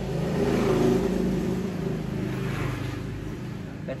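A motor vehicle's engine passing by: it swells to its loudest about a second in, then slowly fades.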